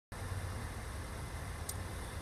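Steady low outdoor rumble under a faint hiss, with one brief high tick near the end.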